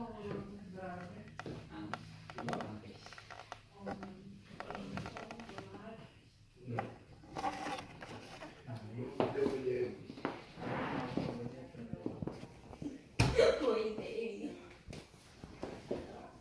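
People talking quietly in a small room, with one sharp knock about thirteen seconds in.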